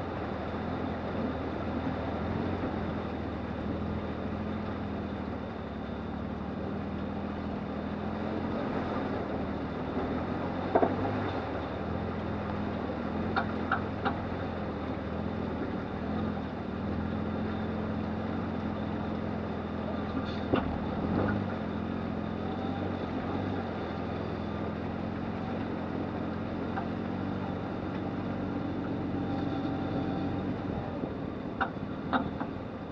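1997 Lexus LX450's 4.5-litre straight-six running steadily at a slow crawl through shallow river water over rock. A few sharp knocks come through along the way.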